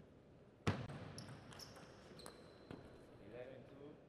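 Table tennis ball struck hard by a racket about a second in, followed by a few lighter ball clicks on table and racket and short high squeaks of shoes on the court floor as the rally ends. Voices come near the end.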